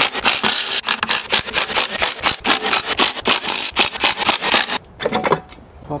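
A Milwaukee cordless power tool runs as a fast run of clicks while it spins out the 12 mm bolts holding a CVT transaxle's bell housing. It stops shortly before the end, after a brief pause and one short final burst.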